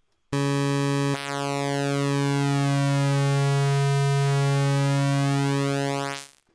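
Propellerhead Reason's Subtractor software synthesizer holding one low note while oscillator 1's phase offset, in subtract mode, is swept. Subtracting the offset copy of the waveform makes the tone shift the way pulse width modulation does. The note starts just after the beginning, and about a second in a hollow sweep begins moving steadily through its tone.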